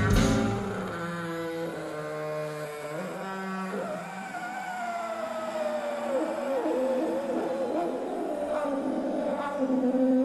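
Loud rock band music cuts off at once and leaves held tones. From about four seconds in, a lone pitched wail slides and wobbles up and down: a vacuum cleaner played as a musical instrument, its pitch worked against the hose.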